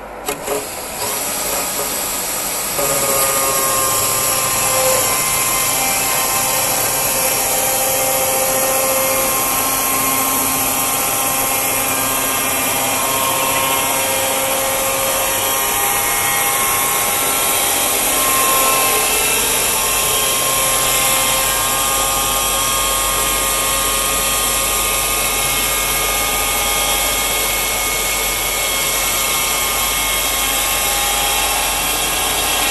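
Portable band sawmill running and cutting through a log. Its motor and blade make a loud, steady noise with a few held tones, opening with a couple of knocks and getting louder about three seconds in.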